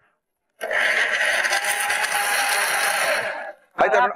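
Electric mixer grinder running, grinding green peas, greens, green chillies and cumin into a paste. It starts abruptly about half a second in, runs steadily for about three seconds and stops abruptly.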